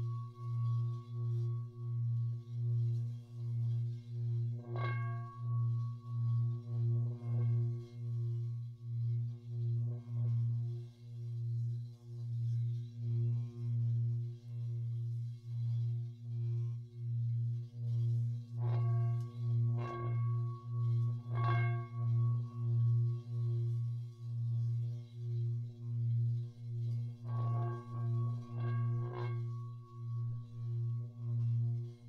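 Singing bowls: a deep, steady hum that swells and fades in a slow, regular beat, about one and a half pulses a second. Higher bowls are struck now and then, once about five seconds in, then a few times in quick succession in the middle and near the end, each strike ringing on.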